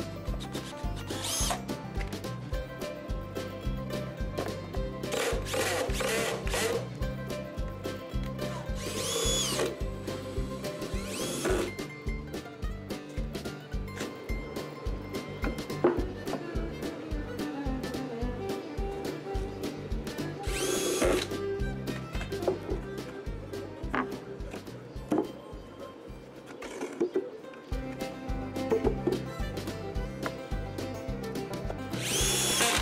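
Cordless DeWalt drill/driver driving screws into wood in several short bursts, the motor whine rising and falling with each one, over background music with a steady beat.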